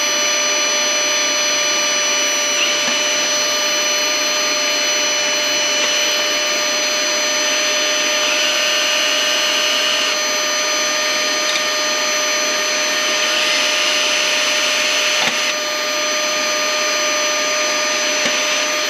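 Handheld cordless mini vacuum (an Opolar 3-in-1 air duster and vacuum) running with a steady high whine as it sucks up drilling debris. A cordless drill boring into a sheet-metal computer case joins in a few short spells of a few seconds each.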